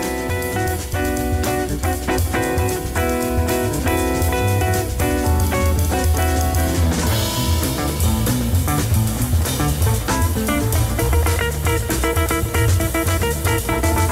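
Live jazz band playing: an archtop electric guitar plays chords over upright bass and drum kit, with a cymbal crash about halfway through.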